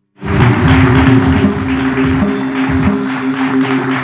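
Studio house band playing a short musical bumper with held chords and a steady beat, starting abruptly after a moment of silence, with the audience clapping.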